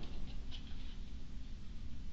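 Faint, scattered light ticks and rustles of a small object, apparently a card, being handled at a table, over a low room hum.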